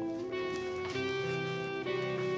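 Background music led by guitar, with held notes that change every second or so.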